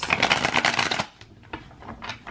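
A deck of tarot cards being shuffled by hand: a rapid fluttering of card edges for about a second, then it stops, leaving only a few faint ticks.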